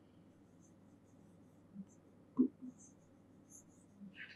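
Faint taps and light scratches of a stylus writing a word on an interactive whiteboard screen, with a few soft short sounds around the middle.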